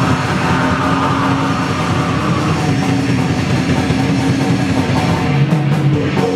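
Raw punk band playing live: distorted electric guitar and drum kit, loud and continuous, with a brighter sustained tone over the first couple of seconds.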